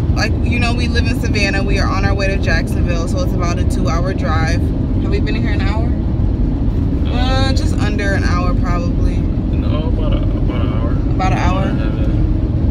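Steady low road and engine noise inside the cabin of a moving car, with a woman talking over it for most of the stretch.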